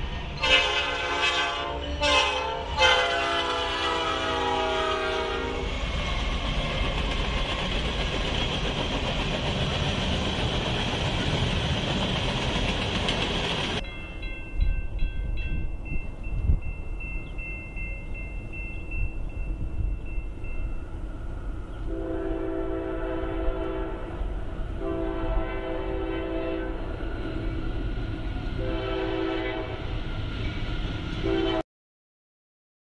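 Train horn sounding: a few short blasts and then a long one, followed by a steady rushing noise that stops abruptly. After that comes a steady high ringing, then the horn again in two long blasts with a third starting near the end, the pattern of a train whistling for a grade crossing.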